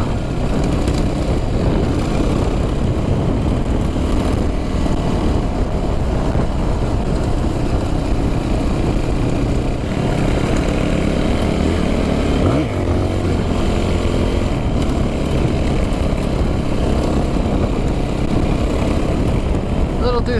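Yamaha WR426 dirt bike's four-stroke single-cylinder engine running under way at a steady pace, heard from the rider's seat. About twelve and a half seconds in there is a brief rise in pitch.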